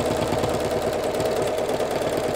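Electric sewing machine running steadily, stitching quilting lines through layered fabric in a rapid, even rhythm of stitches.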